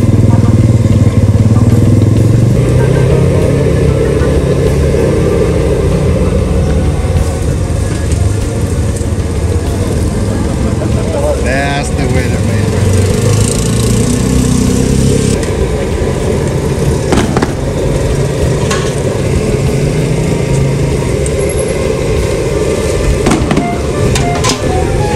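Busy street ambience: a steady low rumble under background voices, with a brief squeal about halfway through and a couple of sharp knocks near the end.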